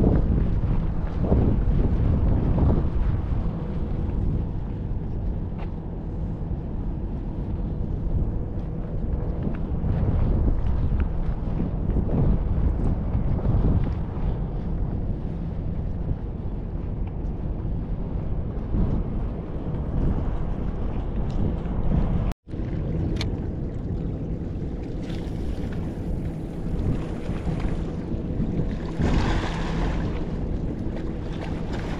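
Wind buffeting the microphone: a loud, deep rumble that swells and eases in gusts. The sound cuts out for an instant about two-thirds of the way through.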